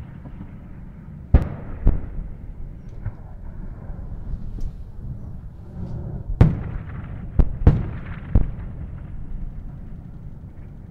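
Battlefield artillery explosions: a series of sharp blasts over a continuous low rumble, two about a second and a half in and a cluster of four between six and eight and a half seconds in.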